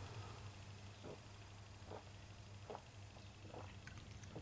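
Faint gulps of a person swallowing a mouthful of beer, about four, spaced under a second apart, over a low steady hum.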